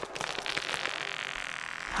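Branches and leaves crackling and rustling as they are pushed apart, with quick small cracks at first and then a dense steady rustle.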